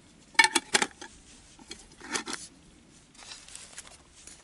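A screw lid being put onto a glass jar and turned shut: a quick cluster of sharp clicks against the rim about half a second in, then softer scrapes as the lid is turned.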